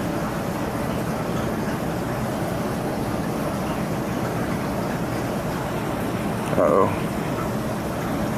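Steady rushing noise of a running reef aquarium's water circulation from its pumps and sump, with a brief voice sound about seven seconds in.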